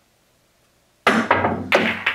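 A pool cue striking the cue ball hard about a second in, followed quickly by several more sharp clacks and knocks as the balls collide and bounce off the cushions.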